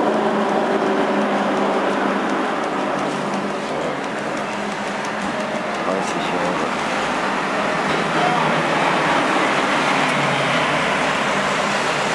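Steady background din with indistinct voices in it.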